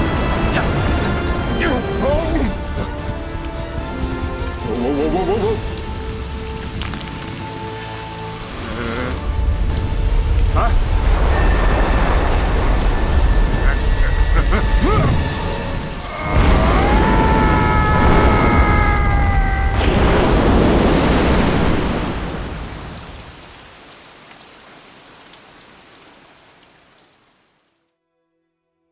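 Heavy rain and thunder of a cartoon storm, mixed with film score music and short vocal cries. The low thunder is loudest through the middle, with a few high held tones over it, and everything fades out over the last few seconds.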